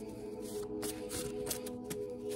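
Tarot cards being shuffled by hand: a quick run of papery card flicks and snaps, over background music of held notes.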